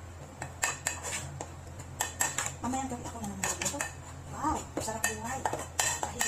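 Kitchen utensils and dishware clinking and clattering irregularly as they are handled at a counter, over a steady low hum.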